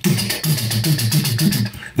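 A man's voice making rhythmic action-score music with his mouth: a quick run of low hummed or grunted notes, several a second, with breathy clicking beats.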